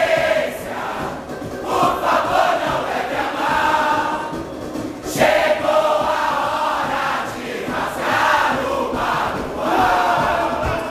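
A large chorus of men's and women's voices singing a samba-enredo together, loud, in phrases that run on without pause.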